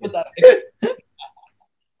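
A man's brief laugh: a few short voiced bursts in the first second, the loudest about half a second in.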